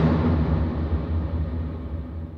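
A single loud crash with a deep, rumbling low end, hit just as the closing accordion jingle finishes, slowly dying away.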